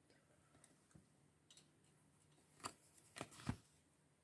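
Faint handling noise from a hand on an open paperback book: a few soft clicks and rustles. The loudest three come close together between about two and a half and three and a half seconds in.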